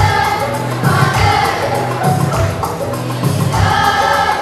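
A group of children singing together over accompanying music with a steady bass beat.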